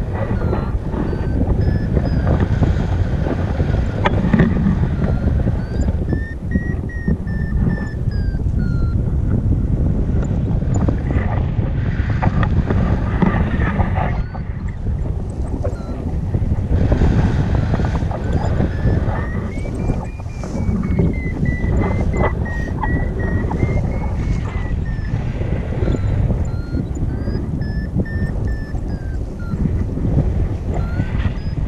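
Wind rushing over the camera microphone during a tandem paraglider flight, loud and steady, with a faint thin tone that slowly rises and falls in pitch.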